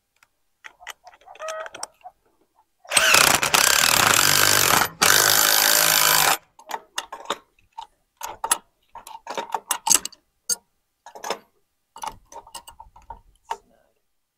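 Cordless drill running under load in two bursts, about two seconds and then just over one second, driving the hardware of a gate hinge into a wooden post, followed by scattered light metallic clicks and taps.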